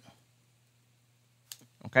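Computer keyboard keys clicking: one sharp click about one and a half seconds in and a couple of fainter ones just after, with near silence before them.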